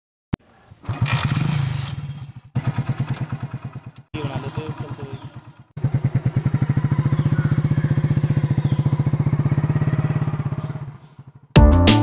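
Motorcycle engine heard in several short edited snippets, running with a regular pulsing exhaust beat and settling into a steady idle for several seconds. Music starts near the end.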